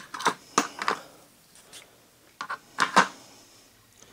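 Hand tools or small metal parts being handled: a handful of sharp clicks and clinks in two clusters, the loudest about three seconds in.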